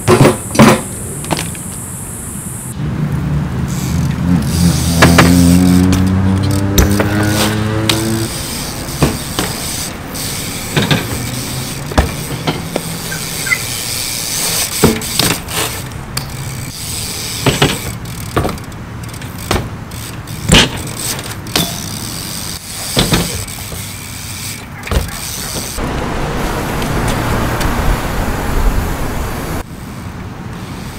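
BMX bikes riding on concrete: tyres rolling, with many sharp knocks and clanks of landings and bikes hitting ledges, one every second or two. A few seconds in, a vehicle engine climbs steadily in pitch for about four seconds.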